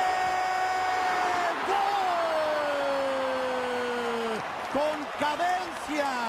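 Football TV commentator's drawn-out goal call: one voice holds a steady shout, then a second, longer shout that slides gradually down in pitch, over stadium crowd noise.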